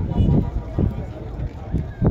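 People talking, voices breaking in and out over a steady low rumble.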